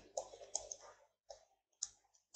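Faint taps and clicks of a stylus on a tablet as handwriting is written out. A cluster of short taps comes in the first second, then two single clicks follow.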